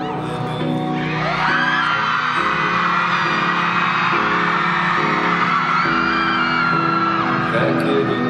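Pop backing music with changing chords, with a crowd of fans screaming and whooping over it from about a second in, fading near the end.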